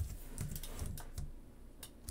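A handful of separate, scattered clicks from computer keys and mouse buttons as node values are entered and changed.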